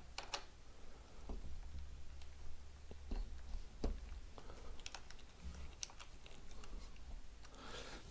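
Faint, irregular clicks and light knocks of a hand tool on metal as a motorcycle's handlebar clamp bolts are worked loose, over a steady low hum.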